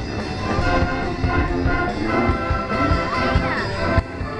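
Marching brass band playing live, trombones, trumpets and a sousaphone sounding together in held notes over a regular low beat.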